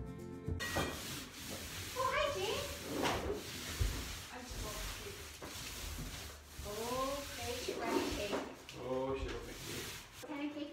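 Paint roller on an extension pole rolling paint onto a plastered wall: a steady rubbing swish. A few short, high-pitched vocal sounds rise and fall over it, and music cuts off just under a second in.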